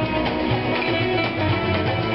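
Live flamenco band playing: acoustic guitars strummed and plucked, with sharp percussive hits from hand drums and clapping.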